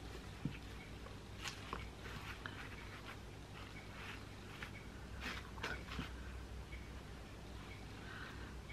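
Faint, irregular rustling and small soft clicks of yarn being pulled and handled as a tangled skein is worked loose from a crocheted shawl, over a low steady hum.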